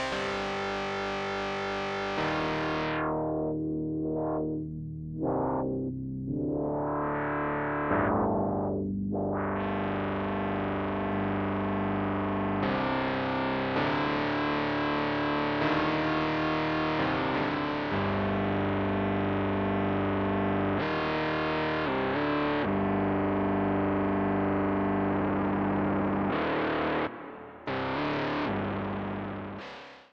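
Sampled Casio CZ synthesizer bass and lead patch from the CZ Alpha Kontakt library, played live on a keyboard as sustained notes that change every second or two. Its brightness sweeps down and back up several times in the first ten seconds, and the last notes fade out near the end.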